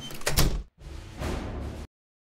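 A door sound effect about half a second in, followed by background music that cuts off abruptly near the end.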